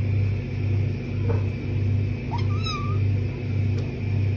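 A kitten's short mew, rising and then wavering, about two and a half seconds in, over a low rumble that swells and fades about one and a half times a second.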